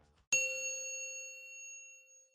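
A single bell-like chime struck about a third of a second in, then ringing out and fading slowly.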